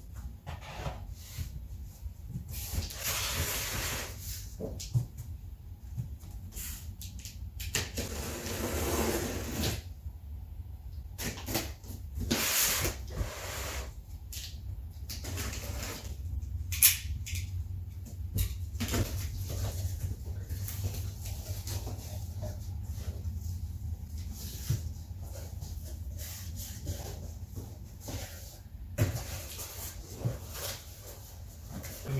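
A tall cardboard speaker box being handled and opened: scraping and rustling of cardboard in bursts of a second or two, with scattered knocks and clicks, the sharpest a little past the middle. A low steady hum sits underneath.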